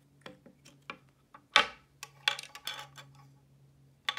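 Wooden and plastic toy-car pieces clicking and clacking as they are handled and pressed together on a tabletop: a run of light, separate clicks, busier in the second half.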